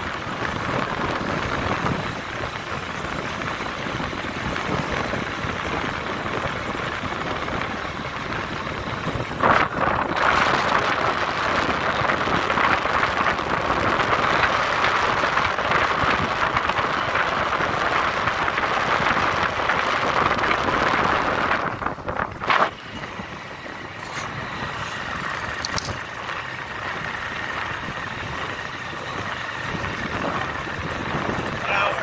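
Motorbike taxi riding along city streets, heard from on board: a steady rush of engine and road noise that grows louder about a third of the way in and drops back about two-thirds through, with two brief breaks.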